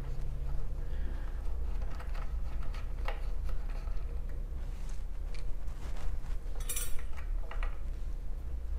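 Small metallic clicks and scrapes from a wrench turning the nut of an electric guitar's output jack, over a steady low hum. A brief cluster of bright metal clinks comes near the end as the nut and washer come off.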